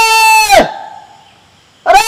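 A person calls out a long, drawn-out 'bhauji-e!' on one held high pitch, falling away about half a second in. A short lull follows, and speech resumes near the end.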